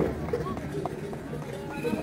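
Crowd ambience: scattered distant voices over low, uneven background noise.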